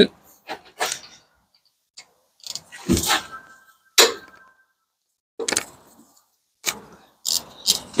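Irregular metallic clicks and clunks of a wrench with a 14 mm socket working on a rear brake caliper bolt as it is loosened, with a brief ringing clank about three seconds in.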